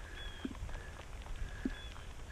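Quiet outdoor background with a steady low rumble and two faint, brief high chirps, one shortly after the start and one near the end.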